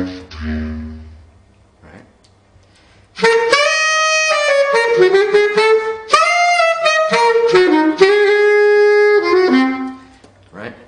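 Selmer Paris Privilège bass clarinet: a soft, low note fading away in the first second or so, a short pause, then from about three seconds in a loud, bright phrase of held and sliding notes in the upper register, the instrument blown out at full volume to show its dynamic range.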